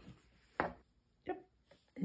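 Hands handling and laying quilt pieces on a wooden sewing-machine table: two brief soft taps, one about half a second in and another just past a second.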